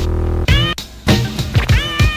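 Live turntablism: a hip-hop drum beat with scratched samples cut over it. It opens on a held buzzing tone for about half a second, and near the end a sample's pitch bends up and down in a meow-like wail.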